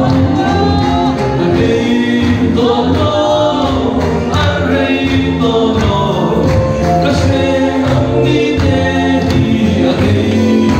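A choir singing a gospel song, several voices together holding sustained notes.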